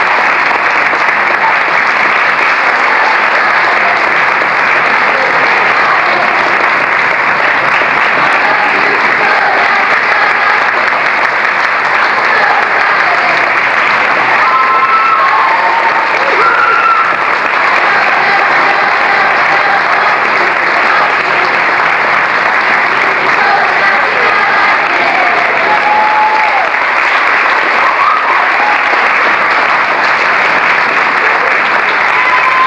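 Audience applauding steadily and loudly, a dense unbroken clapping, with a few brief voices calling out over it around the middle.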